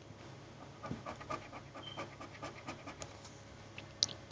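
Faint, quick scratching strokes on a scratch-off lottery ticket, scraping away the coating over the play spots, about four strokes a second, starting about a second in and stopping near the three-second mark.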